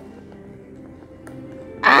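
Background music with steady held notes, ending in a loud startled "Ah!" from a young person near the end.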